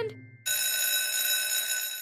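Electric school bell ringing, a steady ring that starts suddenly about half a second in and goes on without a break.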